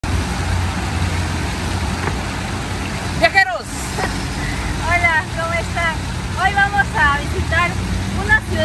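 Steady low rumble of street traffic, with voices and laughter joining from about three seconds in.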